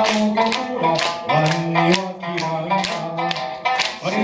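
Okinawan sanshin plucked in a steady rhythm, about three strokes a second, while a man sings along. About a third of the way in he holds a long low note.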